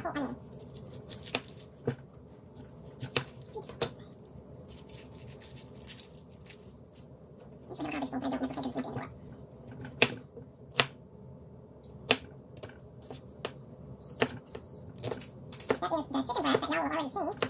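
Scattered sharp clicks and taps of an onion being peeled by hand and then cut with a kitchen knife on a cutting board. A short stretch of voice comes about halfway through, and near the end a faint high-pitched tone pulses on and off.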